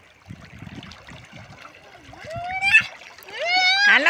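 River water splashing around bathers, then a child's high-pitched squeals rising in pitch in the last second and a half.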